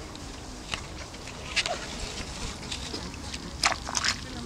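Rubber boots walking through wet bog grass and sphagnum moss, with a few sharp swishing strokes, the loudest near the end.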